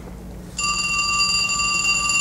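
Telephone ringing: one long, steady ring with a bright bell-like tone, starting about half a second in.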